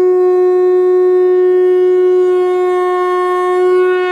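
One long, steady note blown on a horn-like wind instrument, rich in overtones and held at a single pitch.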